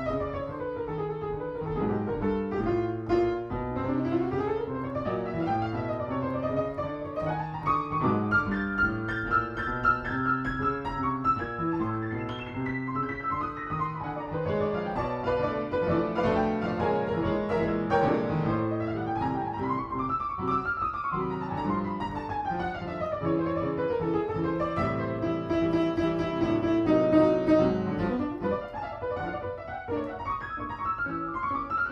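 Grand piano played solo in a jazz improvisation: chords with fast chromatic runs sweeping up and down the keyboard, several times over.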